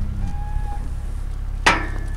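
Cattle crowded in a muddy pen, with a steady low rumble and a couple of faint, brief calls from the herd. A man's voice calls to the cattle near the end.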